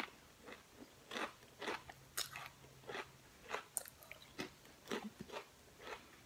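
A person chewing thick potato chips with her mouth close to the microphone, making irregular crisp crunches about twice a second.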